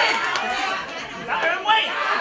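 Audience cheering and shouting in an applause vote, with a few last claps at the start, thinning into crowd chatter about a second in before voices rise again.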